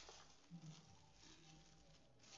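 Near silence: a faint plastic-bag rustle and soft patter of cattle manure being poured onto a soil heap in a plastic tub.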